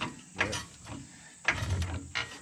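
Hydraulic floor jack being pumped with its long handle, giving a few sharp mechanical clicks and creaks as it raises the car.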